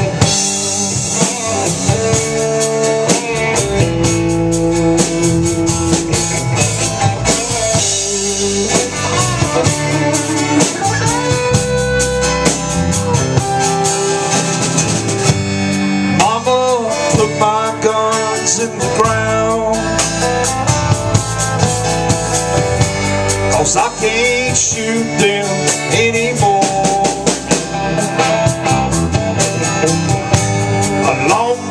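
A live rock band playing a song on electric guitars and a drum kit, with a singer's voice at times.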